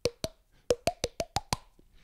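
A quick run of about eight short, hollow clicks, each with a brief pitched ring. They quicken to about six a second in the second half.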